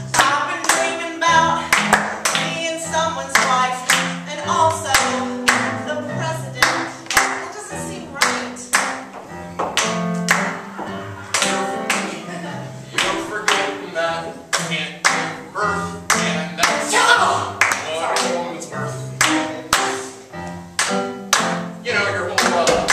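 A live stage song: voices singing over instrumental accompaniment, with a steady beat of sharp percussive strokes about two a second.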